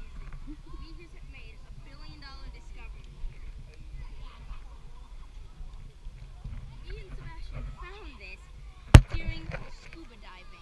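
Scattered background voices of children talking and calling, with one sharp, loud knock near the end.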